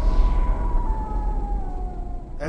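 Horror-style title-card sound design: a deep rumble under a single eerie high tone that slowly slides down in pitch and gradually fades.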